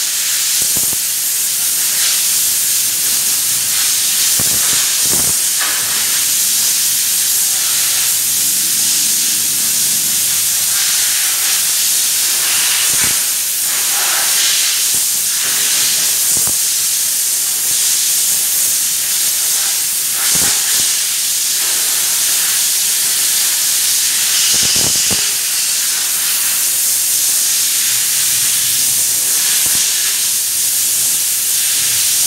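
Spray gun running on compressed air, hissing steadily as it sprays spray-on chrome onto a motorcycle fuel tank, with a few short knocks along the way.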